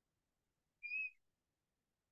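A single short, high whistle-like note of about half a second, slightly wavering, about a second in.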